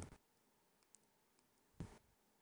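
Near silence with room tone, broken by a faint click about a second in and a short, sharper click near the end.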